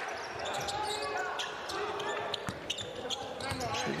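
Basketball arena game sound: a ball bouncing on the hardwood court several times as short sharp knocks, over a steady murmur of crowd and players' voices.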